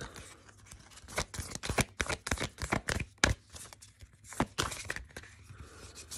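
A deck of oracle cards being shuffled by hand: quick, irregular papery snaps and slaps of cards against one another, a few of them louder near the middle.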